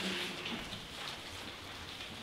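Thin Bible pages rustling softly as they are flipped through.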